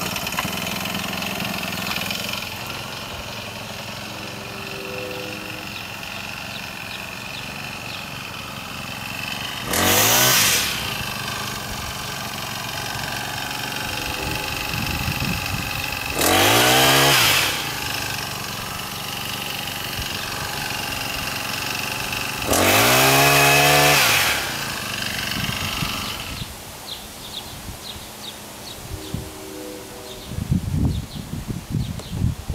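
Honda GX35 four-stroke engine driving a Stihl HT-KM pole pruner's chain saw on an extended shaft. It idles, then is revved up three times for about a second each as the saw cuts small high branches.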